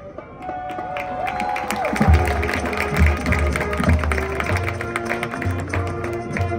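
Marching band with front ensemble playing a Spanish-flavoured show piece. After a brief lull, a bending melody line comes in, then repeated heavy low bass hits start about two seconds in under the full band.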